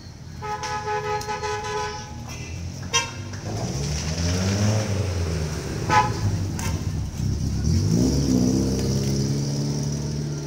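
Street traffic: a vehicle horn held for about a second and a half, two short honks later on, and engines rising and falling in pitch as vehicles pass.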